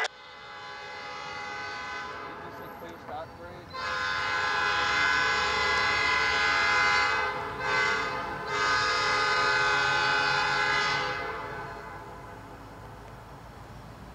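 Norfolk Southern SD40-2 diesel locomotive's air horn sounding the grade-crossing signal as the train approaches: long, long, short, long, the last blast ending a couple of seconds before the end. A low rumble from the approaching train lies underneath.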